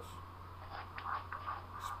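Light scratching and scraping of a metal screwdriver against the gear hub's parts, with a few small clicks near the end, over a steady low hum.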